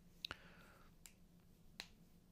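Near silence: faint room tone with a steady low hum and three small faint clicks, about a quarter second, one second and nearly two seconds in.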